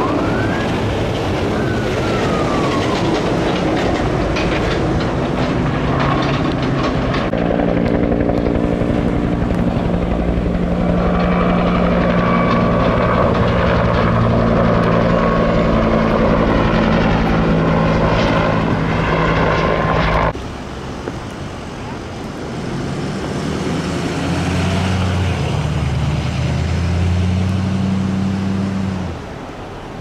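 Loud rotor noise of a firefighting helicopter carrying a water bucket, with a siren's wail tailing off in the first second. From about seven seconds in, a steady engine drone with a clear pitch takes over and cuts off suddenly about twenty seconds in. After the cut an engine revs up in rising steps and drops away just before the end.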